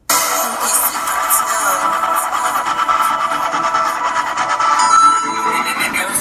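Music played loud through a car audio system with SoundQubed HDC3 18-inch subwoofers. It starts suddenly as play is pressed on the head unit, heard inside the vehicle's cabin.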